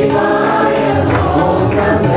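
A group singing a Hindu devotional bhajan together, the voices holding long steady notes.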